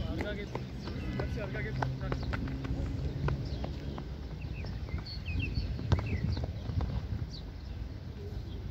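Footballers calling out to one another during a kickabout on a hard asphalt pitch, with scattered sharp knocks of the ball being kicked and of feet on the hard surface. The strongest knock comes about six seconds in.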